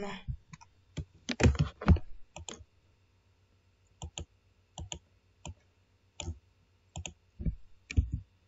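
Computer mouse clicking: short sharp clicks, often in quick press-and-release pairs, repeating roughly every 0.7 s through the second half, as blocks and wires are dragged on screen. A brief laugh comes at the very start.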